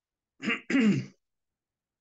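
A man clearing his throat: two short voiced sounds close together, falling in pitch, about half a second in, with dead silence around them.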